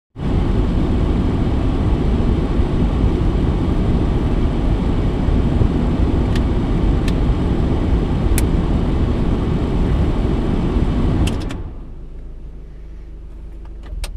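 Steady rushing noise inside a parked car's cabin, an idling engine with its ventilation fan blowing, with a few light clicks. About eleven and a half seconds in the rush cuts off sharply, leaving a quieter low rumble.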